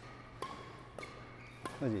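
Three faint sharp knocks about half a second apart: a badminton racket striking shuttlecocks in a hitting drill, with brief ringing tones after two of the hits.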